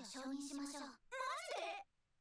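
A character's voice from the subtitled anime speaking a line of Japanese dialogue in two phrases, with a short break about a second in.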